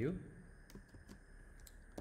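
Faint typing on a computer keyboard: a handful of separate key clicks spread over the two seconds.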